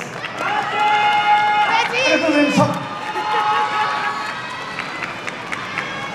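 A group of voices cheering and shouting, with several long held high calls overlapping and one voice sliding down in pitch about two seconds in.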